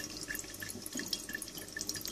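Faint, irregular dripping and trickling of distillate running from the reflux still's product condenser into the parrot.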